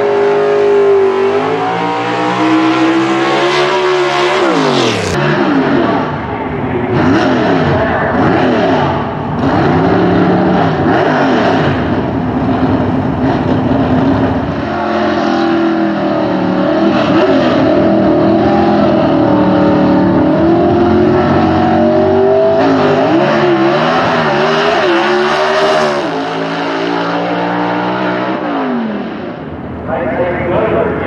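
Gasser drag cars' V8 engines at full throttle, their pitch climbing and dropping again and again through gear shifts as they run down the drag strip.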